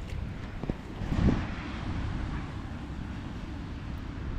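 Wind buffeting the microphone: a steady low rumble of gusts, with a brief bump about a second in.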